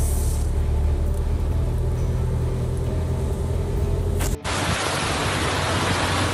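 A deep, steady rumble with a faint hum runs for about four seconds, then cuts off abruptly into a steady hiss of rushing floodwater.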